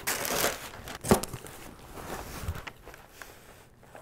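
Green tissue paper rustling and crinkling as a boxed gift is pulled out of a cardboard box, with one sharp knock about a second in; the rustling dies down toward the end.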